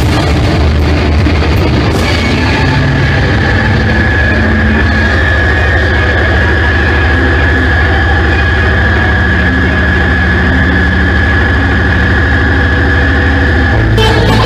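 Loud amplified live rock band drone: a heavy, sustained low rumble from bass and guitars. A steady high whine is held over it from about two seconds in until near the end.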